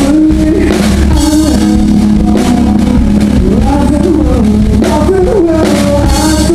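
Loud live rock band music, with electric guitar over drums.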